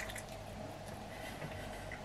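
Faint, wet chewing of a cold chicken wing, with a few small mouth clicks.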